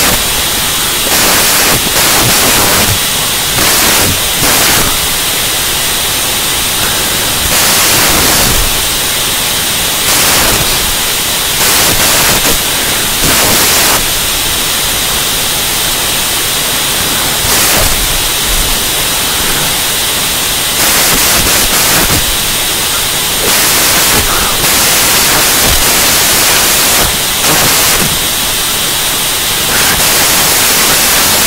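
Loud electronic static hiss with a faint high steady whine. It swells in irregular surges every second or few.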